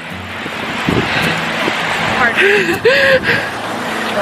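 Wind rushing over the microphone with lake waves washing on the shore, building up over the first second. A brief voice-like sound comes about two and a half seconds in.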